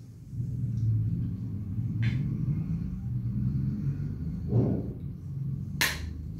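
A steady low rumble with a few faint clicks, and one sharp click shortly before the end.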